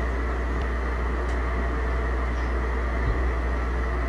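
Steady low hum with an even hiss, the background noise of the call recording, with a small tick about three seconds in.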